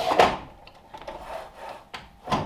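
A wooden plank rubbing and knocking as it is slid and positioned on a miter saw table, loudest at the start and then softer rubbing; the saw is not running.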